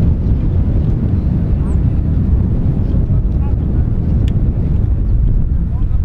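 Wind buffeting the microphone: a loud, steady low rumble, with a faint tick about four seconds in.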